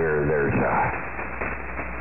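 Shortwave pirate radio broadcast heard through a receiver in single-sideband mode, narrow and hissy: a man's voice for the first half second, then mostly band static with faint traces of voice.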